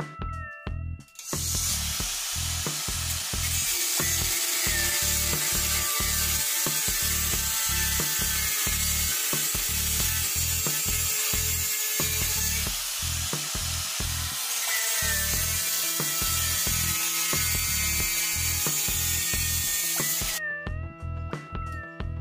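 Cordless angle grinder with a cut-off disc cutting through rectangular steel tube: a steady, harsh grinding noise that starts about a second in and stops shortly before the end. Background music with a beat plays throughout.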